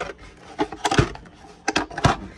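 Hard plastic tool cases being handled in a toolbox drawer: a run of sharp clicks and knocks, the loudest about a second in, with a few quicker ones near the end.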